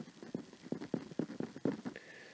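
Stylus tapping and scraping on a tablet's writing surface as letters are handwritten, a quick irregular series of light taps.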